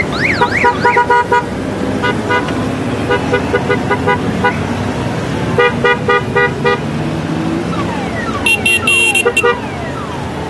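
Horns of passing Honda Gold Wing touring motorcycles honking in quick repeated toots, in five bursts, over the steady sound of their engines. Sliding whistle-like tones rise and fall near the start and again near the end.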